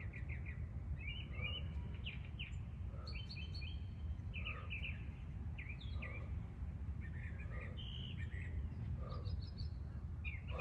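Birds chirping in short, repeated high calls throughout, over a steady low background rumble.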